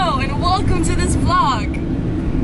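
Steady road and engine rumble inside the cabin of a camper van driving at speed, with a woman's high-pitched excited shouts over the first second and a half.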